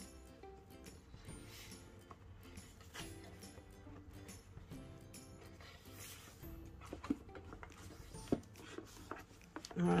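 Quiet background music with held notes, and a few light knocks near the end as a book is handled while a crocheted cover is fitted over it.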